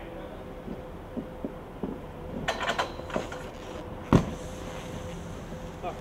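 Snowboard hitting a metal scaffolding pipe rail: a ringing metallic clatter about two and a half seconds in, then one hard knock about four seconds in, over a steady faint hum.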